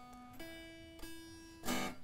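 Unamplified electric guitar strings plucked one at a time for tuning. A lower open string rings out, then a higher string is plucked about half a second in and again a second in, each note ringing steadily. A short louder sound comes near the end.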